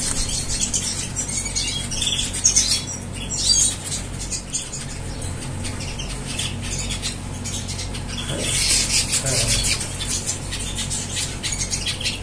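A cageful of canaries and red siskin–canary hybrids, chirping and fluttering their wings around a water bath dish. The short, high-pitched calls and wing flutters come throughout, busiest a little past the middle.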